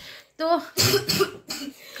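A person coughing: a short run of two or three coughs about a second in.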